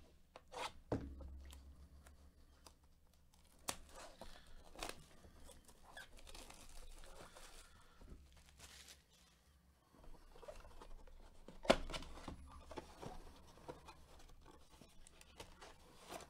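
A cardboard trading-card blaster box being torn open and handled: tearing and crinkling, with scattered sharp knocks and taps of the box, the loudest about twelve seconds in.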